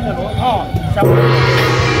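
Large hanging gong struck once about a second in, ringing on with a steady low hum and a shimmering wash. Voices are heard before the strike.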